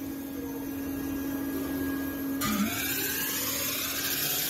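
Metal spinning lathe running with a steady hum as it turns a sheet-metal disc at speed. About two and a half seconds in, a steady hiss starts, the sound of the forming roller rubbing on the spinning metal as it shapes it into a basin.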